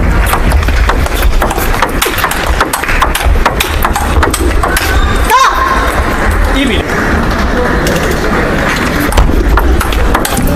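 Table tennis rally: a quick run of sharp clicks as the celluloid-type plastic ball strikes the bats and table, most of them in the first five seconds and more near the end, over steady background music.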